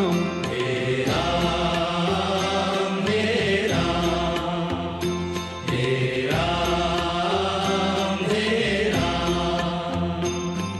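Hindu devotional bhajan music with a chanted, mantra-like refrain, its phrases repeating about every three seconds.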